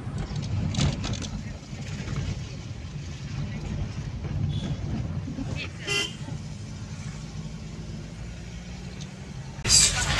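Steady low rumble of a car's engine and tyres heard from inside the cabin while driving, with a brief vehicle horn toot about six seconds in. Near the end the sound jumps suddenly to louder street traffic.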